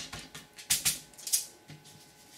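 Paper being pressed down onto crumpled aluminium foil by hand: a few sharp crinkles and taps, loudest around the middle, then quiet.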